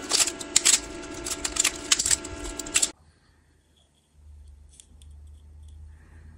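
Quick, sharp clicks and crackles of a hard plastic 3D print being handled by hand, stopping abruptly about halfway through. After a short gap comes a low steady hum with a few faint ticks.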